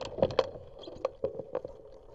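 A bicycle rattling as it rolls over bumps, with sharp irregular knocks and clicks a few times a second over a steady rolling hum. Two loud knocks come close together a quarter of a second in.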